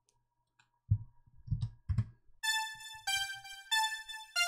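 Kilohearts The One software synthesizer playing back in a loop: three low thumps about a second in, then from about halfway a run of bright, electric-piano-like synth notes that step between pitches, each held about half a second.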